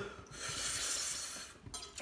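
A breathy rush of air through the mouth lasting about a second: someone hissing or sucking air against the burn of very spicy noodles.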